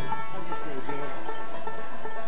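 Banjo and other acoustic bluegrass string instruments playing, with several notes ringing together.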